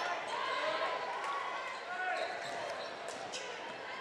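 A basketball being dribbled on a gymnasium's hardwood court, under a steady background of faint players' and spectators' voices in the hall.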